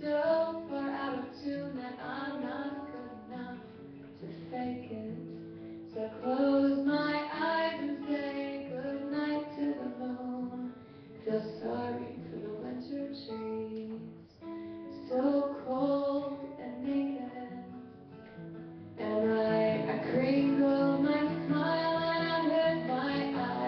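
A woman singing live to her own strummed acoustic guitar, her voice carrying the melody over the chords. Voice and guitar swell louder for the last few seconds.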